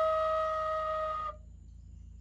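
Native American-style wooden flute holding one long, steady note that slowly fades and stops about a second and a half in.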